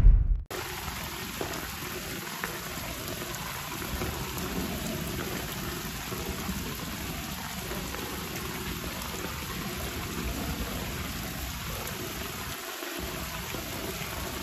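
Heavy rain pouring down onto a lake and the foliage around it, a steady, even hiss that starts about half a second in as the music cuts off.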